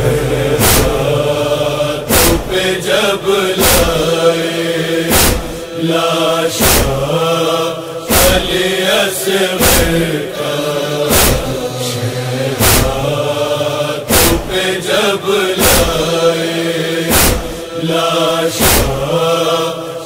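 Interlude of a noha: male voices chanting a wordless refrain over a rhythmic beat in the style of matam (chest-beating). A sharp beat falls about every second and a half, with lighter beats between.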